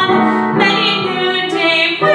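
A young woman singing a musical-theatre song in a trained voice, moving between sung notes with vibrato on the held ones, with instrumental accompaniment underneath.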